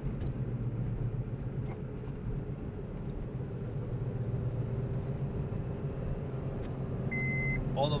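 Steady engine and road noise inside the cabin of a 2005 Honda Civic coupe, its 1.7-litre four-cylinder and automatic cruising at road speed. A short high-pitched beep sounds near the end.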